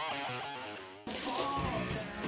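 Guitar intro music fading out, then cut off sharply about a second in. After the cut come the metallic clinking and jingling of steel lifting chains hanging from a loaded barbell during a bench press, with a thin steady high whine behind.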